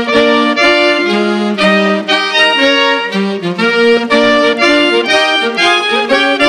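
Saxophone and clarinet ensemble playing a swing tune in harmony, with several parts at once and short notes changing several times a second.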